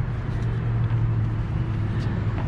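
A steady low mechanical hum, unchanging throughout.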